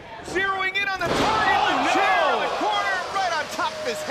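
A wrestler is slammed back-first onto a steel chair on the ring mat by a northern lights suplex: a single crash about a second in. A loud crowd reaction of many shouting voices follows it.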